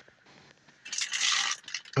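Plastic mushroom grow bag crinkling as it is grabbed and lifted, a rustle of about a second that starts about a second in.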